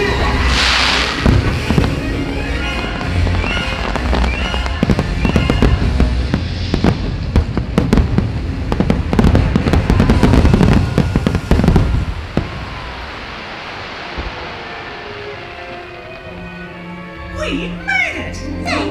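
Fireworks shells bursting in rapid, overlapping volleys of cracks and booms over loud show music. The barrage stops after about twelve seconds, and the music carries on more quietly.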